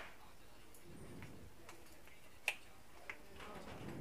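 Faint, sparse sharp ticks, the clearest about two and a half seconds in, from a soldering iron tip working on the solder joints of an induction cooktop's circuit board.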